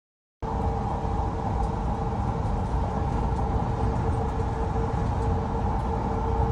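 Steady road and engine noise inside a moving ambulance: a low rumble with a steady mid-pitched hum over it. It cuts in suddenly about half a second in.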